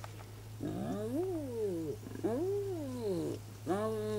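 Spotted hyena calling: three drawn-out calls that rise and fall in pitch, each about a second long, the last one shorter.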